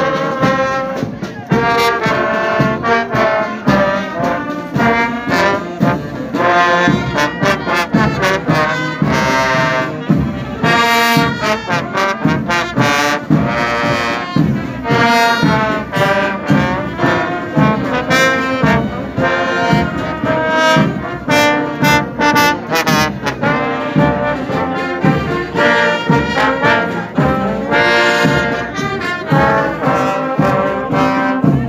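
A marching brass band of trombones, tubas, euphoniums and trumpets playing a tune together while on the move, loud and close, with a steady beat.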